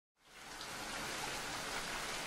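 A steady, even hiss like falling rain fades in over the first half second and holds level.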